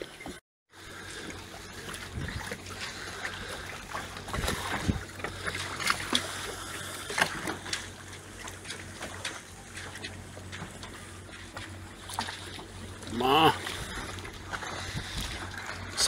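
Choppy harbour water lapping and sloshing against the hull of a small moored sailboat, with a steady low hum and a few scattered knocks.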